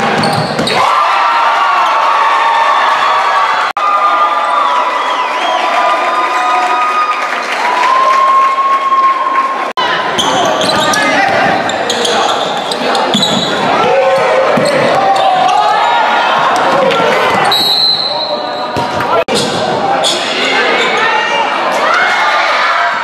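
Basketball game play in a large gym: a ball bouncing on the hardwood floor, sneakers squeaking, and players' and spectators' voices.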